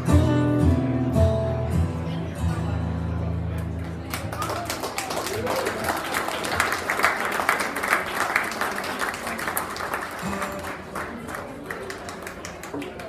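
Acoustic guitars let the last chord of a song ring out, then the audience applauds from about four seconds in. The applause is strongest midway and tapers off near the end.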